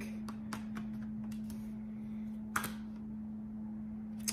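Tarot cards being handled: a run of light clicks and snaps as cards are drawn and flipped, then one louder snap about two and a half seconds in. A steady low hum runs underneath.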